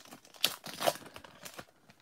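The wrapper of a 1991 Score baseball card pack being torn open and crinkled by hand. It gives irregular crackling crinkles, loudest twice in the first second, that thin out near the end.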